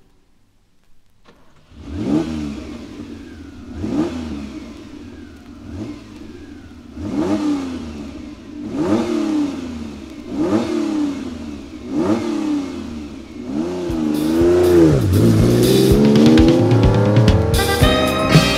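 Ferrari 365 GT4 BB's flat-twelve engine revved in repeated blips, about one every one and a half to two seconds, starting about two seconds in. Near the end it is held and climbs to higher revs as a band with cymbals comes in.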